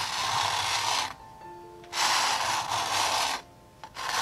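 Metal palette knife scraping thick black acrylic paint across a canvas in two long strokes of about a second each, with a pause between them.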